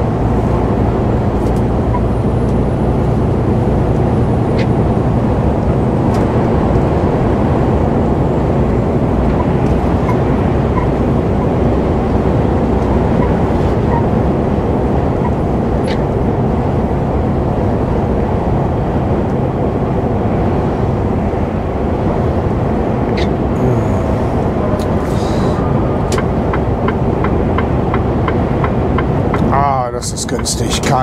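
Steady cab noise of a Mercedes-Benz truck cruising on the motorway: engine drone and tyre noise on a wet road, unchanging throughout.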